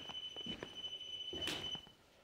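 A triggered ghost-hunting sensor device sounding one steady, high-pitched beep for most of two seconds before it cuts off, with a few soft knocks or footsteps, the loudest about one and a half seconds in.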